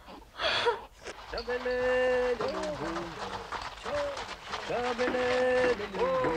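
Newborn baby crying in long, held wails that bend in pitch at their ends, with falling cries near the end, after a short breathy gasp about half a second in.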